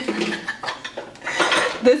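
Glassware clinking and knocking against the countertop several times as a large glass mixing bowl is set down and a glass measuring cup is moved.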